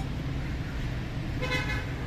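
Steady street traffic rumble, with one short car horn toot about a second and a half in.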